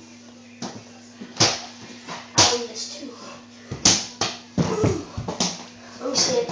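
A series of sharp thumps and knocks, unevenly spaced about a second apart, with a brief voice sound near the end.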